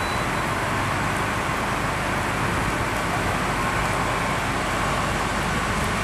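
Steady engine and traffic rumble with an even hiss, holding the same level throughout.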